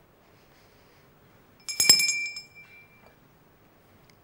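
A single sharp clink about two seconds in, ringing on in a few high bright tones that fade away over about a second.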